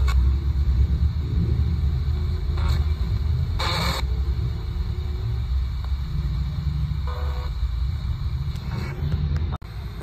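RadioShack 12-587 radio sweeping the FM band as a ghost box: short bursts of static and station snippets, the longest about three and a half seconds in, over a steady low vehicle rumble. A sharp click comes just before the end.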